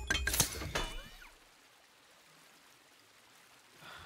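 Metal armour clanking and scraping as an Iron Man gauntlet works at War Machine's faceplate: a quick run of clanks with a ringing metallic tone in the first second, then a short whirring sweep before it goes quiet.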